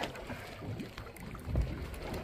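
Water sloshing against the hull of a boat at sea, with low rumble on the microphone that swells about a second and a half in.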